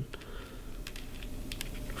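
Faint, scattered light clicks and ticks from hands handling a plywood firewall held against a foamboard power pod.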